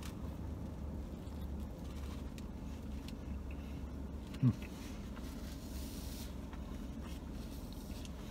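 Steady low hum inside a parked car's cabin, with faint chewing of a mouthful of burger and a short "hmm" about four and a half seconds in.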